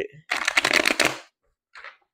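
A deck of oracle cards being shuffled: a quick run of fine fluttering clicks lasting about a second, then a faint short rustle near the end.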